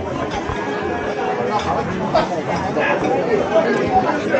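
Restaurant dining-room chatter: many diners' voices overlapping into a steady hubbub, with no single voice clear.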